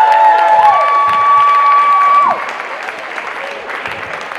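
Brass band holding a long final note, a horn sliding up to the top pitch and then falling off about two seconds in, over applause and cheering that carries on after the band stops.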